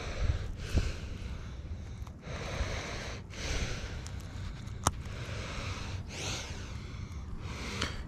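A person breathing close to the microphone in repeated hissy swells, with a low rumble and one sharp click about five seconds in.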